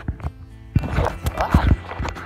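Handling noise from a hand-held phone: irregular thumps and rubbing on the microphone as it is moved about, loudest in the second half, with music playing underneath.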